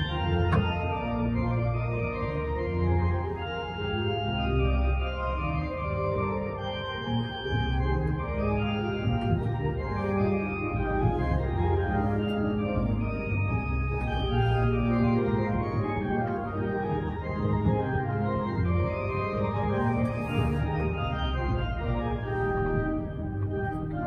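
The new pipe organ of Canterbury Cathedral being played: held chords and melodic lines over deep bass notes, sounding steadily without a break.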